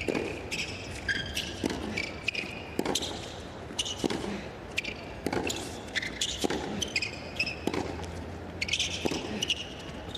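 Tennis rally on a hard court: sharp racket-on-ball hits and ball bounces about once a second, with short high squeaks of shoes on the court between them.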